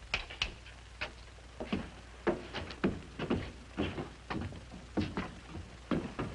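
Footsteps and knocks on wooden boards, about two a second, with two sharp knocks right at the start.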